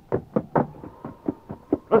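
Radio sound-effect footsteps hurrying along: a quick, even run of short knocks, about four or five a second.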